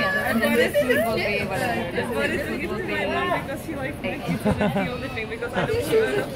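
Several people talking over one another close by: overlapping conversation with no other sound standing out.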